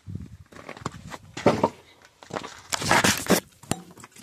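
Footsteps crunching on gravel in irregular scuffs, mixed with rustling from the phone being handled; the loudest crunching comes about three seconds in.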